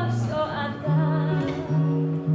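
A woman singing a slow song into a microphone, accompanied by a nylon-string guitar whose low notes are held beneath her voice.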